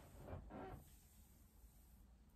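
Near silence, with a brief faint sound in the first second.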